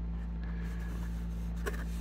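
A steady low hum under faint room noise, with no distinct knocks or clicks: background room tone in a pause between speech.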